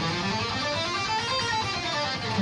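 Schecter Hellraiser C1 electric guitar playing a D minor scale run over two octaves, one note at a time, climbing to its top note a little past halfway and then coming back down.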